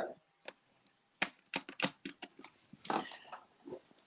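Faint, scattered clicks and handling noises, with a few brief, faint bits of voice.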